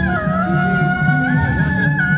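Taiwanese temple-procession music: a suona plays a high melody, holding notes and bending and sliding between them, over busy drumming.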